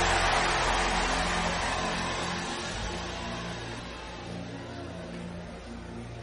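Congregation noise and hall echo fading away over the first few seconds after a shouted declaration, over soft sustained background music.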